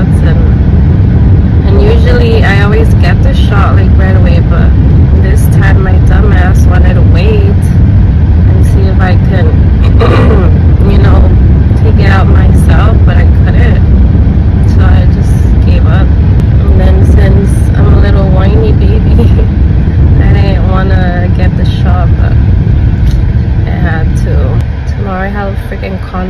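Loud, steady low rumble of road and engine noise inside a moving car's cabin, under a woman's talking; the rumble eases off near the end.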